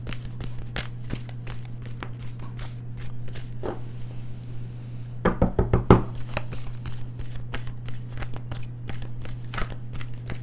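Tarot cards shuffled overhand, a quick run of soft card clicks and slaps that thins out briefly about four seconds in. Around five to six seconds in, a cluster of louder knocks as the deck is squared against the table, then the shuffling resumes.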